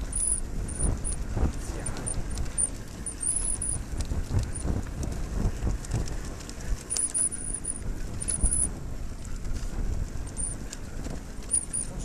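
Trials motorcycle ridden over rough mountain grassland, heard from the rider's own bike: an uneven low rumble with frequent knocks and rattles as it bumps over the ground.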